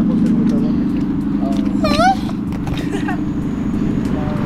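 A car engine idling steadily, a constant low hum. About two seconds in, a voice calls out briefly, its pitch sliding up and down.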